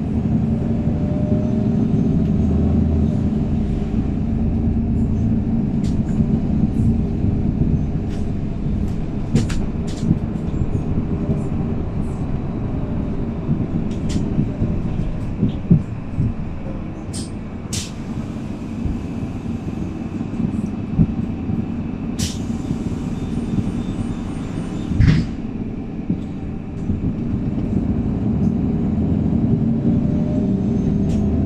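Cabin sound of a 2019 MAN 18.310 compressed-natural-gas city bus with Voith automatic gearbox under way: a low engine and road drone with rattles and clicks from the body. It quietens past the middle. Near the end a hiss of air lasts about three seconds and ends in a thump.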